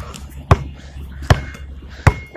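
A basketball being dribbled: two sharp bounces about a second apart, in a steady rhythm.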